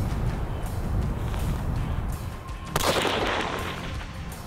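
A single .300 Remington Ultra Magnum rifle shot fired about three seconds in: a sharp crack followed by about a second of echo.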